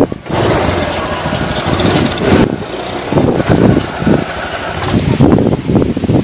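A motorcycle engine running close by: steady and loud from just after the start, then rising and falling in several bursts.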